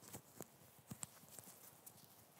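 Faint, scattered clicks and knocks, about six in two seconds, from a clip-on microphone being handled and adjusted at the tie. The sound is otherwise near silent.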